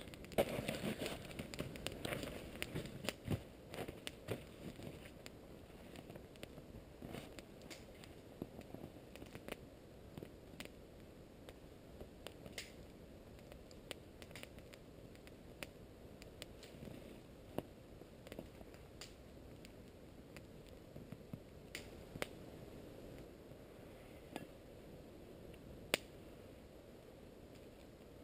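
Small wood campfire crackling faintly, with scattered sharp pops through the whole stretch, muffled through a waterproof action-camera housing. In the first few seconds there is denser rustling and crinkling as a paper drink-mix packet is handled.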